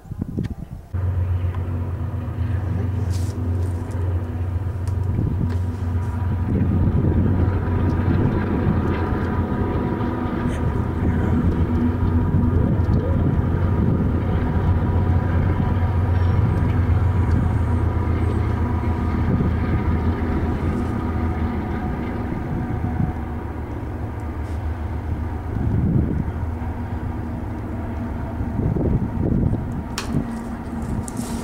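Freight train rolling past with a pair of mid-train BNSF diesel locomotives working. Their engines give a steady low drone with a higher whine, loudest through the middle as the locomotives go by, over clicks and clatter from the car wheels on the rail.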